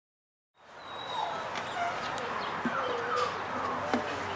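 Belgian Malinois puppy whining in short cries that rise and fall in pitch over steady outdoor background noise, the sound fading in about half a second in.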